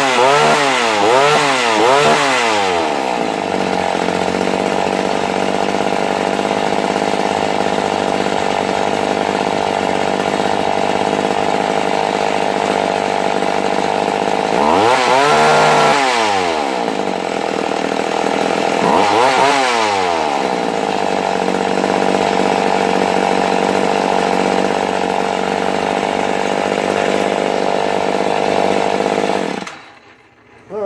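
McCulloch Mac 110 two-stroke chainsaw engine running loud with no bar or chain fitted: revved up and back down about three times at the start, idling steadily, revved twice more in the middle, then shut off just before the end.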